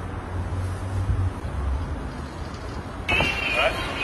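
Low steady outdoor rumble, strongest in the first second, with a short burst of voice starting about three seconds in.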